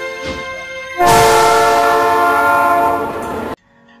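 Background music with plucked notes for the first second. Then a train whistle sounds one long blast, a steady chord of several tones with a hiss over it, lasting about two and a half seconds and cutting off suddenly.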